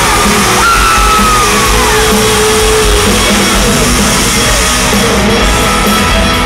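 Live country-rock band playing a loud instrumental intro on electric guitars and drums, with the crowd yelling and cheering over it.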